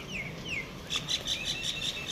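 Birds calling: two short falling chirps, then a quick run of high repeated notes, about five a second.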